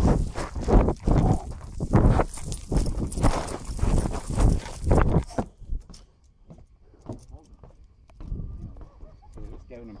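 Quick footfalls on wooden boardwalk boards, about two a second, mixed with the rustle and knocking of a jostled handheld microphone. They stop about five and a half seconds in, and a voice comes near the end.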